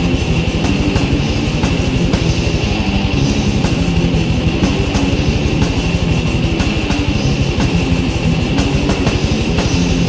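Death metal band recording: heavily distorted electric guitars and bass over a fast, steady, rapid-fire kick drum.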